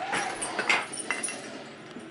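A dog whimpering a few short times in the first second or so: it wants to go out.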